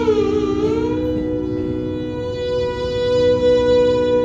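Carnatic violin playing: a bowed note slides down and back up in the first second, then a long note is held, over a steady drone.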